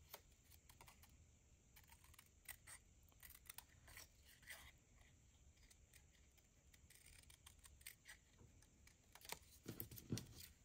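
Faint, irregular snips of small scissors cutting close around a paper label, with a few louder snips near the end.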